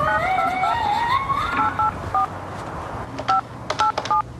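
Touch-tone desk phone being dialled: about eight short two-tone keypad beeps at uneven intervals, some with the click of the key. Under the first two seconds a separate tone climbs upward in steps and then fades.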